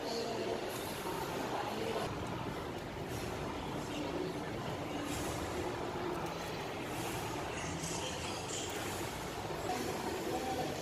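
Steady room ambience of a busy indoor public space: a constant wash of background noise with faint, indistinct distant voices.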